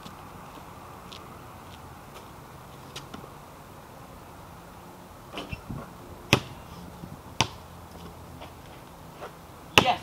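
A basketball bouncing on pavement: a few sharp, irregularly spaced thuds, the loudest about six, seven and a half and ten seconds in, over a steady faint background hiss.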